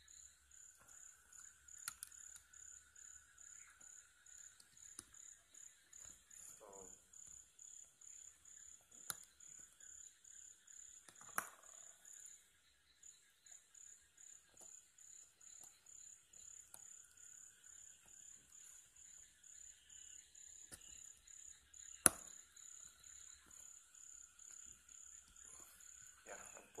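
Faint, steady insect chirping, about three high chirps a second, typical of crickets. Over it come a few sharp clicks of small plastic watch parts being handled and snapped together, the loudest about 22 seconds in.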